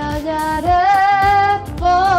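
A woman singing long held notes that slide between pitches, with instrumental accompaniment underneath.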